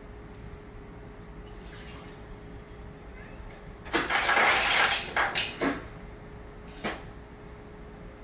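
Refrigerator door ice dispenser dropping ice into a mug: a loud rattling rush for about a second halfway through, then a few short clatters of cubes, and one more near the end.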